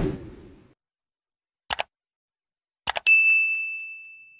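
Sound effects of an animated subscribe button: a swoosh at the start, then two quick mouse-click pairs about a second apart, the second followed at once by a bright bell ding that rings on and fades.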